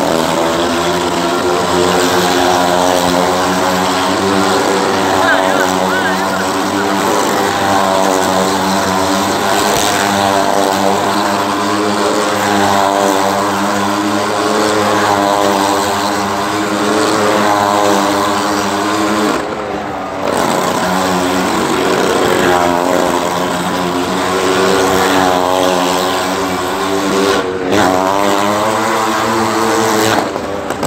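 Vehicle engine held at high revs as it circles the wall of a well-of-death arena. Its pitch swells and falls over and over, and the sound drops out briefly twice in the latter part.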